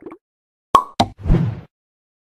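Sound effects for an animated outro title: two sharp pops about a quarter second apart, then a short, deeper whooshing thud.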